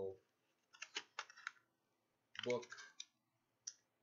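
A few sharp clicks and light rustling of cardboard and paper packaging, about a second in, as a small folded instruction booklet is pulled out of its insert.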